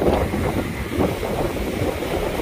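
Rough sea surf washing and breaking over a rocky shore, with strong wind rumbling on the microphone. A steady, low, churning noise, no single crash standing out.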